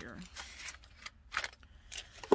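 Paper money and a cash envelope being handled as bills are pulled out to recount, with two short, crisp rustles, one about a second and a half in and one near the end.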